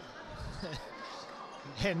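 A handball bouncing on the sports hall's court floor under faint arena ambience, with a commentator laughing near the end.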